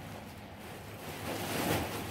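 Room tone: a steady low hum under an even hiss, with a faint swell of rustling noise in the second second.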